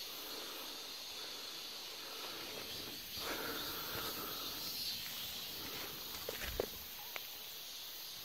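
Faint, steady outdoor background hiss in a pepper field, with a few soft short clicks or rustles near the end.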